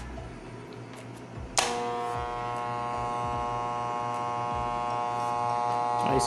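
Electric hair clipper switched on with a click about one and a half seconds in, then running with a steady buzzing hum. The clipper has just been repaired for a loose cord connection that made it cut out when the cable moved, and it runs without cutting out.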